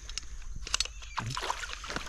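Landing net being worked through shallow creek water with a trout in it: irregular small splashes and sloshing.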